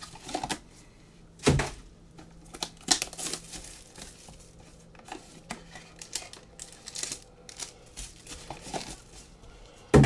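Foil-wrapped trading card packs and their cardboard box being handled: a run of crinkling and small taps, with two louder knocks about a second and a half and three seconds in.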